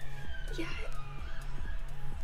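Police siren heard faintly, one slow wail falling in pitch, under background music with a repeating beat.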